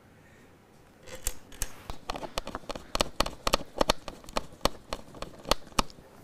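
Small metal guitar hardware being worked with a small screwdriver: a fast, irregular run of sharp light clicks and ticks, about four a second, starting about a second in.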